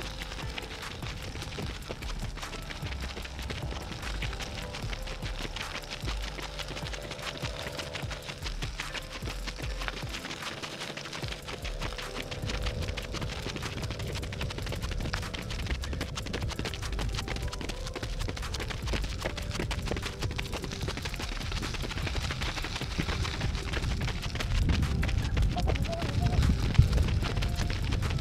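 Running footsteps of three runners on a paved path, a quick steady patter of footfalls, under background music with sustained tones.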